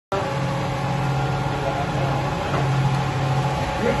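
Commercial cold press screw oil press running: a steady machine hum with several held tones.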